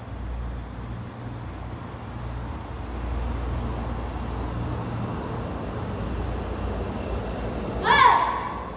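Steady low hum and room noise of a large hall, with a short, loud, high-pitched voice cry right at the very end.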